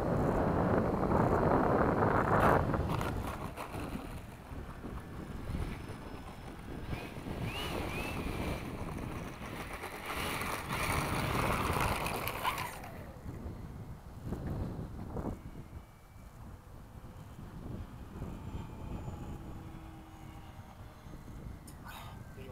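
Wind buffeting the microphone as a rushing noise, loudest for the first couple of seconds, then weaker, and dropping off abruptly about thirteen seconds in to a much quieter background.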